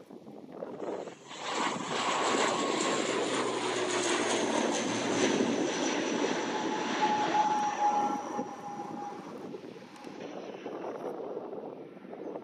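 ATR 72-600's twin turboprop engines at takeoff power as the airliner climbs out past the listener. The sound swells about a second in, holds loud with a whine that sinks slightly in pitch, and fades over the last few seconds as the aircraft moves away.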